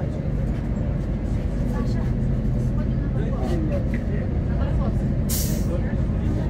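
Solaris Urbino 12 III city bus under way, its DAF PR183 diesel engine and ZF 6HP-504 automatic gearbox giving a steady low drone inside the cabin. About five seconds in comes a short hiss of released compressed air from the bus's air system.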